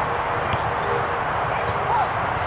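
Steady background noise at an outdoor sports field, with faint distant voices and a brief rising call near the end.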